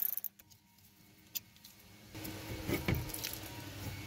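A cordless ratcheting wrench on a brake caliper bolt cuts off right at the start. A second of near quiet follows, then a single sharp metallic click. From about two seconds in come light clinks and handling noise as the loosened caliper and its bolts are taken by hand.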